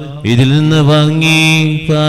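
A priest's voice chanting the Syro-Malabar Qurbana liturgy in Malayalam, in long held notes at a steady pitch, with a short break near the end.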